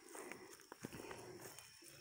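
Near silence: faint outdoor ambience with a few soft footsteps on a dirt forest trail.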